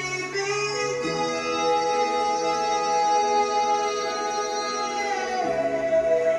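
Slow instrumental music with long held chords, changing about a second in and again about five seconds in; no singing.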